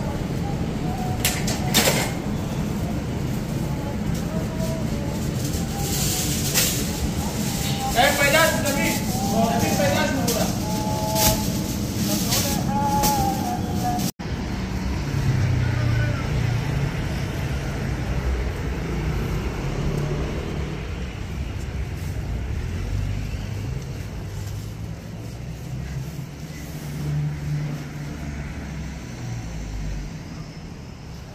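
Busy tandoor restaurant kitchen: a steady low rumble with several sharp metal clinks from tandoor skewers and a few seconds of background voices. After an abrupt cut about halfway, a low, uneven rumble of street traffic.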